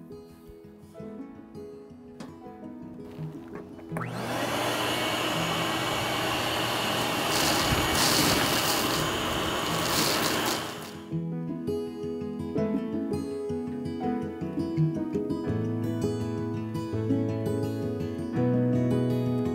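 Shop vacuum switched on about four seconds in, running for about seven seconds with a steady whine while sucking loose chunks and flaky crud out of the bottom of a portable gas grill's firebox, then cutting off suddenly. Background music plays throughout.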